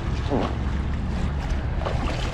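Lake water sloshing and lightly splashing around a person in the water handling a capsized kayak, over a steady low rumble of wind on the microphone.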